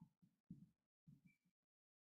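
Near silence: a few very faint, low muffled sounds in the first second and a half, then nothing.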